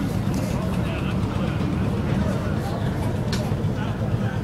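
Steady low rumble of a car's engine and tyres heard from inside the moving car's cabin.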